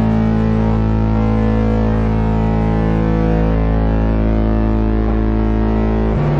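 A live band holding one loud, sustained chord that rings out steadily without change.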